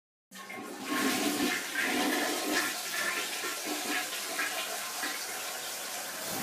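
Toilet flushing: a rush of water starts suddenly just after the opening and grows louder about a second in, then runs on with a gurgle.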